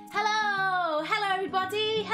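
A woman's voice in a long sing-song call that falls in pitch, followed by shorter sung-out phrases, over acoustic guitar music.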